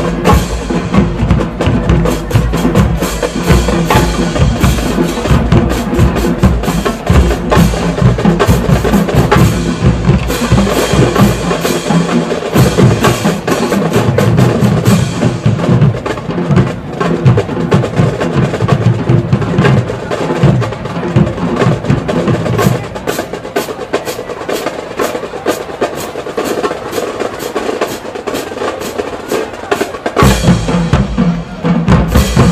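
Marching drumline playing a loud, fast percussion feature on snare drums, bass drums and crash cymbals, with dense stick strokes throughout. The deep bass-drum hits drop away about twelve seconds in, return, then thin out again for the last several seconds while the snares keep going.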